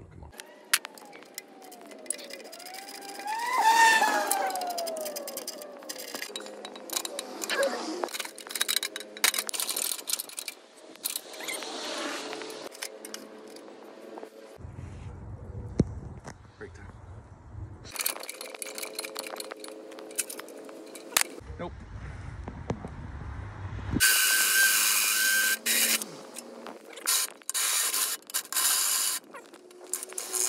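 Scattered clicks and scrapes of work on a trailer's old hand-crank winch, then near the end a cordless drill running: one steady run of about two seconds, then several short bursts as the winch's fasteners are drilled out.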